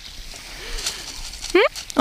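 Soft clicking and rattling of loose beach pebbles as a cat rolls on them, over a faint steady wash. A short spoken 'Hı?' comes near the end.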